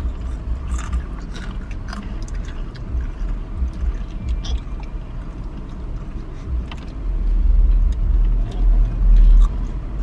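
Low rumble inside a car cabin, growing louder about seven seconds in, with faint crunching of Takis rolled tortilla chips being chewed.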